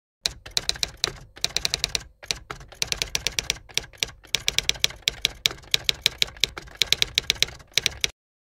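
Typewriter sound effect: rapid keystroke clicks in quick runs, broken by short pauses, accompanying text typing itself onto the screen.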